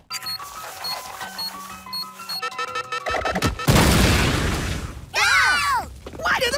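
Cartoon soundtrack: hurried music with short high beeps about twice a second as a countdown timer runs out, then a loud explosion boom about three and a half seconds in. A brief voice cries out near the end.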